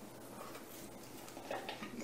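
Faint rustling of fresh, damp dill sprigs being lifted and handled, with a brief slightly louder rustle about one and a half seconds in.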